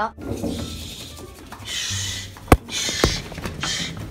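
Handling and rustling as a hand gropes into a dark space to grab a small pet, with a sharp click about two and a half seconds in and a fainter one half a second later.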